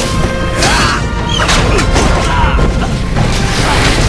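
Dramatic fight-scene music mixed with sword-fight sound effects: several sharp impacts and swishes over a dense, loud soundtrack.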